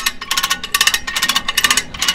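A hand come-along winch ratcheting as its handle is pumped to take in slack on the calf-pulling line. Quick runs of sharp clicks from the pawl, one run for each stroke of the handle, a few strokes a second.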